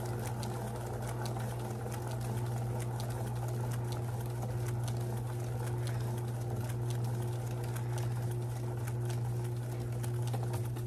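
Paint spinner's motor running at a steady speed, a low even hum with a thinner steady tone above it and faint scattered ticks.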